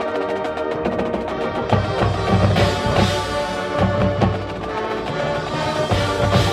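A marching band playing live: brass and woodwinds holding sustained chords over drum hits from the percussion section.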